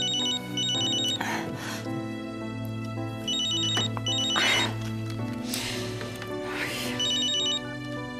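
A mobile phone rings with an electronic trilling ringtone, in rapid pulsed bursts that come back about every three and a half seconds. Soft background score music plays under it.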